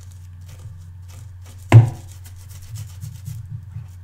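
Watercolour brush bristles scrubbing over a ridged silicone brush-cleaning pad in short scratchy strokes, over a steady low hum. A single sharp knock, the loudest sound, comes a little under two seconds in, and a few softer bumps follow near the end.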